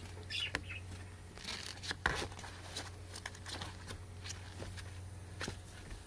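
Ferret scrabbling and rustling about in a playpen among cardboard boxes and mesh: scattered scratches and clicks, with a louder rustle about two seconds in, over a steady low hum.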